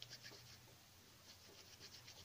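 Faint sticky scratching and crackling of fingers pressing and rubbing a small piece of plasticine, in two short flurries at the start and near the end, over a low steady hum.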